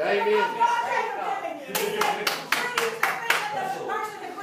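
A quick, even run of hand claps starting about two seconds in and lasting about a second and a half, over voices.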